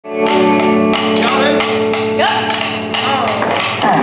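Live blues band playing: electric guitar notes held over a steady drum beat, with a singer's voice gliding in about two seconds in and again near the end.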